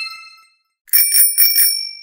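Bell sound effects: one bright ding right at the start that fades within half a second, then a bell rung four times in quick succession about a second in, its ring fading slowly.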